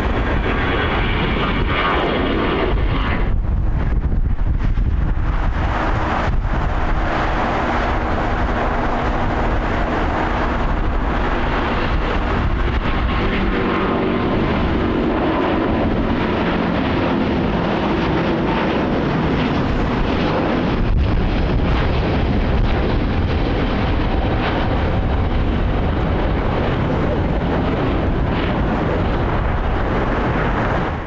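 Airbus A350's Rolls-Royce Trent XWB turbofans running loud and steady at takeoff power through the takeoff roll and climb-out. A high fan whine is heard in the first few seconds, then a steady lower drone.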